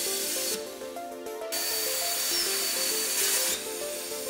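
Background music with a repeating stepped melody over the steady hiss of plasma arc cutting. The hiss drops out for about a second just after the start, then returns.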